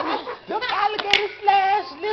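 A person's voice making drawn-out, wordless exclamations, with two quick sharp smacks, like hand claps, about a second in.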